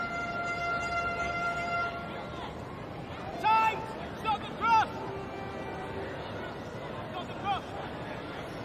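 Stadium crowd murmur at a football match, with a held tone for the first two seconds and several short shouted calls from voices, the two loudest about three and a half and four and a half seconds in.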